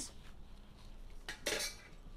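Kitchen tongs clinking as they are picked up: two short clinks about a second and a half in, the second louder.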